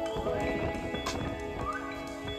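Background music: sustained instrumental notes with sliding pitches over regular percussive hits.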